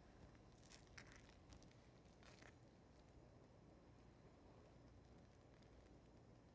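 Near silence, with a few faint soft scrapes of a wooden spatula stirring thick risotto in a pan, about a second in and again a little after two seconds.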